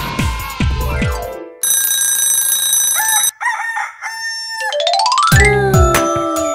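A short children's-cartoon sound sequence between songs. Music with a beat fades out, a steady ringing tone holds for about a second and a half, and then a rooster crows about three seconds in, as a wake-up sound effect. A rising run of notes then leads into an upbeat song intro near the end.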